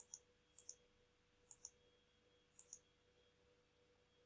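Computer mouse button clicked four times in under three seconds, each a faint double click of press and release.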